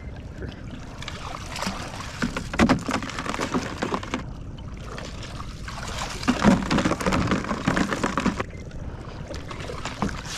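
Water splashing and sloshing as a long-handled crab dip net is swept through the water beside a boat and lifted out, scooping crabs off a trotline. The splashing comes in two rougher bouts, about two seconds and six and a half seconds in.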